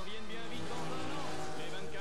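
A race car passing at speed, its noise swelling in the middle, over a song with singing.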